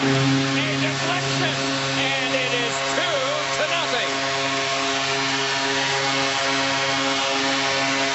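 Arena goal horn sounding one long, steady low tone over a cheering crowd, signalling a home-team goal.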